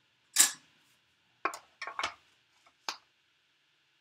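Plastic cutting plates clicking and knocking as they are handled and fed through a small hand-crank die-cutting machine. The loudest knock comes about half a second in, followed by four lighter clicks over the next couple of seconds.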